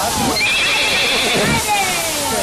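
A horse whinnying: one long high call from about half a second in, lasting about a second.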